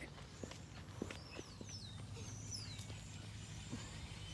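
Faint, scattered footfalls of a saddled mule walking in deep arena sand, with a few light clicks. Birds chirp in thin, high, falling notes in the background.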